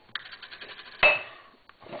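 Kitchenware being handled: a quick run of light clicks, then one sharp clink with a short metallic ring about a second in.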